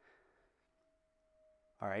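Near silence with a faint, thin steady tone for about a second, then a man's voice near the end.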